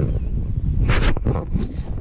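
Wind buffeting the microphone, a steady low rumble, with a short scratchy burst about a second in.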